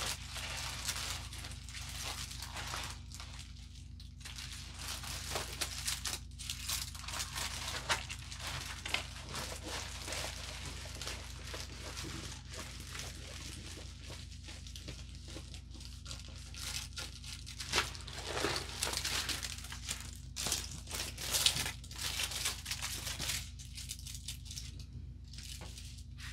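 Irregular crinkling and rustling of a rolled diamond-painting canvas with its plastic cover film and paper sheet as it is handled and rolled backwards to flatten it, over a steady low hum.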